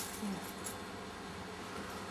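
Low steady room noise with a faint constant hum; no whistle or other distinct sound.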